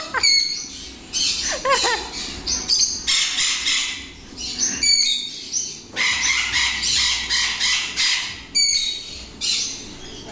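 Parrots calling: repeated harsh screeches, with short whistles and chirps between them, some sliding down in pitch.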